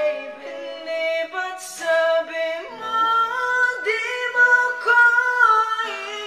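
A man singing a ballad cover, holding long notes that step in pitch, with acoustic guitar accompaniment.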